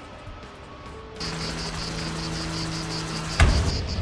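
Cartoon spaceship landing effects: a steady hum with a fast, pulsing high chirring starts about a second in, then a heavy thud of touchdown near the end, followed by a low rumble.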